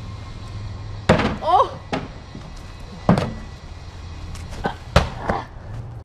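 Baseballs thrown at a homemade wooden target stand: three loud sharp thuds, about a second in, just after three seconds and near five seconds, as the balls strike the stand, with a few smaller knocks between.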